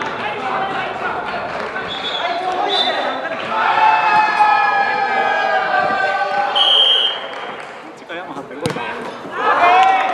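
Spectators calling and shouting, then a short referee's whistle blast about two-thirds of the way in. A single sharp thud of the ball being kicked follows near the end, and cheering starts just after.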